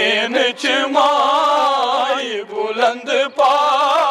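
Men chanting a Kashmiri noha, a Muharram lament, together: the lead reciter's voice on a microphone with the group singing along, in long held lines with a wavering pitch. The lines break briefly twice near the end.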